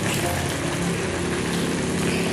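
Steady hissing of a steaming wok of greens and fish cooking over the stove flame, with no water added, the leaves giving off their own juice.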